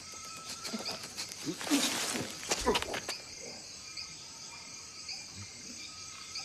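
Film sound-design night-jungle ambience: crickets and other insects chirping and trilling steadily. From about one and a half to three seconds in there is a louder stretch of rustling with short vocal sounds.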